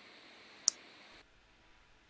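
A single short, sharp, high-pitched click about two-thirds of a second in, over faint room hiss that cuts off suddenly a little past the middle.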